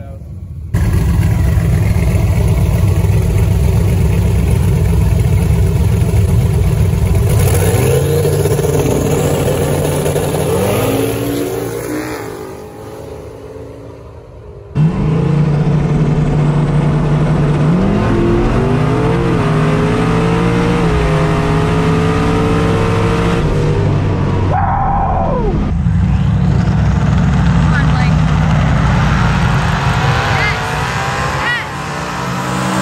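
Twin-turbo Camaro drag car's engine at full throttle on a drag pass, its pitch climbing and stepping up through the gears, with abrupt jumps in sound where takes from different spots are spliced together. Near the end a falling pitch sweep as the car goes by.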